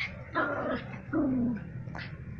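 Yorkshire terrier barking twice, the second bark longer and falling in pitch.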